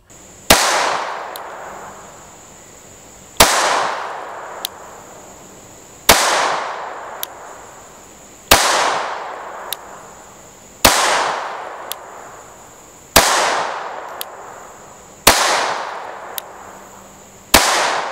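Armi Galesi .32 ACP blowback pocket pistol firing Prvi Partizan 71-grain FMJ rounds: eight single shots, slow aimed fire about two and a half seconds apart, each with a long echoing decay.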